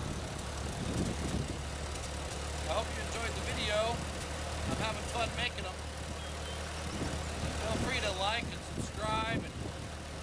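Vintage Ford N-series tractor's four-cylinder engine running at a steady low speed, a constant low drone, with a few brief high voice-like calls over it.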